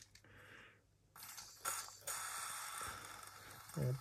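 WD-40 aerosol can spraying through its straw: a steady hiss starting about a second in and lasting over two seconds. It is a weak spray from a nearly spent tin, with only a little coming out.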